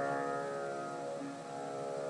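A chord on a plucked string instrument ringing out and slowly fading between sung lines, with one note changing just past a second in.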